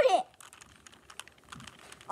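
Plastic clicking of a 3x3 Rubik's cube as its layers are twisted by hand: a run of faint, quick clicks.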